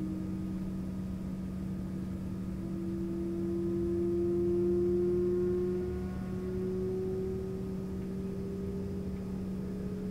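ERJ-135's rear-mounted Rolls-Royce AE 3007 turbofan spooling up during engine start, heard from inside the cabin: a whine that climbs slowly and steadily in pitch, swelling a little in the middle, over a steady lower hum.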